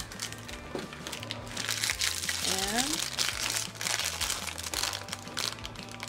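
Thin plastic packaging crinkling and rustling in irregular bursts as small wrapper packets from a miniature food craft kit are handled and pulled open.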